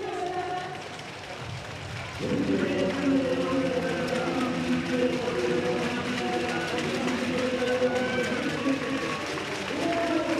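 Stadium crowd murmur. From about two seconds in, a public-address announcement echoes around the stadium, its words smeared into long held tones.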